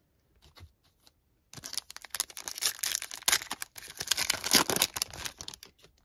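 Wrapper of a Donruss basketball trading card pack being torn open and crinkled: a dense crackling run of about four seconds starting a second and a half in, after a few light ticks.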